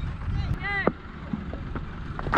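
Steady low wind rumble on a helmet-mounted action camera's microphone, with a single distant shouted call from a player just under a second in.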